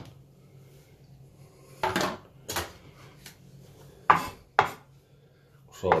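A handful of sharp clatters of a kitchen knife knocking against a plastic food container and a wooden cutting board as chopped apple pieces are scooped in, with quiet gaps between them.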